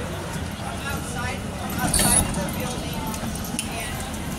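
The curved sliding doors of an MEI hydraulic glass elevator open against a background of faint voices, with one short, sharp metallic clink about halfway through.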